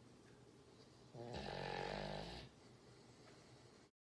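Sleeping dog snoring: one long, pitched snore lasting just over a second, starting about a second in, over faint room noise.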